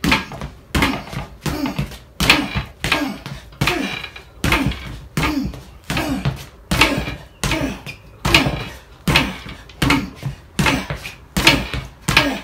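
Short chopping kicks with the toe, instep and outstep landing over and over on a free-standing padded training dummy's legs and base, about one and a half a second, each a thunk with a short ring, mixed with shoe stomps and scuffs on a wooden floor.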